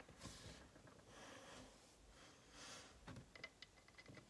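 Near silence, with faint breaths and a few light clicks from small plastic toy pieces being handled, the clicks about three seconds in.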